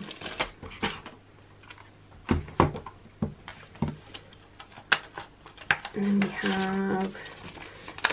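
Polymer banknotes and the clear plastic pouches of a ring binder being handled: soft crinkling with scattered sharp clicks. About six seconds in, a woman hums briefly for about a second.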